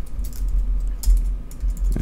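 Typing on a computer keyboard: a few scattered keystroke clicks with low thumps, typing code into a text editor.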